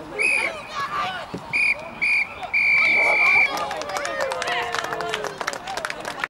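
Referee's whistle at a rugby match: three short blasts, then a long blast of about a second, with voices from players and spectators around them.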